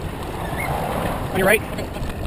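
Wind rumbling on the microphone of a moving bike camera, with a short wavering voice-like call about one and a half seconds in.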